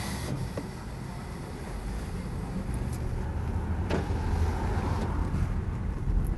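Low rumble of a car's engine and road noise heard from inside the cabin while driving in traffic, growing a little louder about two seconds in. A single brief click comes about two-thirds of the way through.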